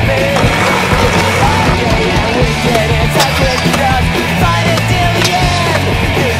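Music with a steady bass line, with skateboard sounds mixed in: wheels rolling on concrete and sharp clacks of the board popping and landing, the clearest about three seconds in and again about five seconds in.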